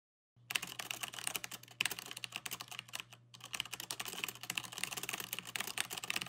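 Rapid typing on a computer keyboard: quick runs of key clicks starting about half a second in, broken by two short pauses, over a low steady hum.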